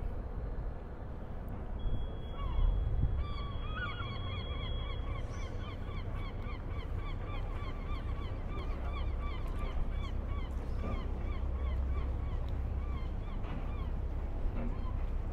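A bird calling in a fast, steady run of short repeated notes, several a second, starting about three seconds in and going on almost to the end, over a low steady rumble.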